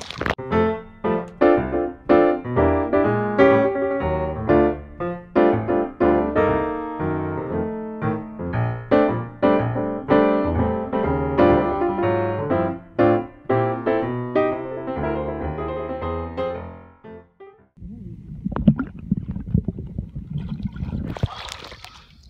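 Background music of quick, struck keyboard notes that stops near the end, followed by a few seconds of low, rough water noise with one sharp knock.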